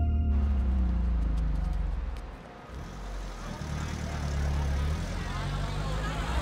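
A car engine running with a low rumble that dips briefly about halfway through and then comes back. A music cue cuts off just as it starts.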